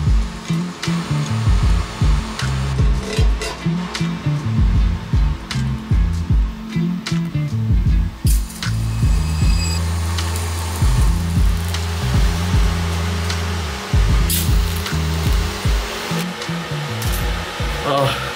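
TIG welding arc hissing steadily as stainless threaded studs are tacked onto a carbon-steel fender with stainless filler rod, under background music with a bass line.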